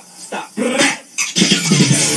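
A dog barking a few short times, with short quiet gaps between the barks. Music starts about a second and a half in.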